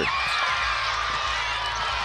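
Basketball arena crowd noise: a steady hum of many spectators' voices while play goes on.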